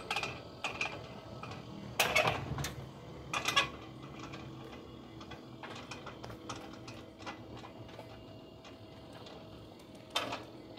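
Solar slide gate operator running, its gear motor driving the sliding gate along the toothed rack: a steady low hum with light ticking and rattling. A couple of louder clunks come in the first few seconds.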